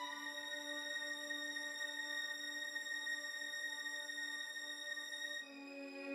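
Orchestral music: a sustained chord held steady for about five seconds, then shifting to a new chord with lower notes coming in near the end.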